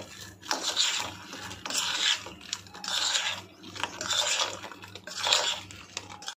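Metal spoon scraping and stirring through a bowl of fried potatoes, coating them in a thick mayonnaise sauce: about five strokes, roughly one a second.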